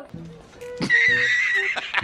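Horse whinny sound effect: a loud, high, wavering cry that starts about a second in and lasts about a second, over background music.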